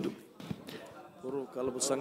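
A short pause in a man's preaching, broken by a single soft tap about half a second in; his voice comes back quietly in the second half.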